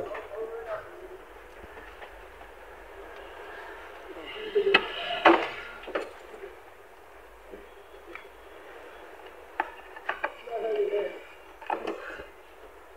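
Scattered clicks and knocks of a car battery being worked on by hand: terminal clamps undone and the battery handled in its tray. Brief bits of voice come in between.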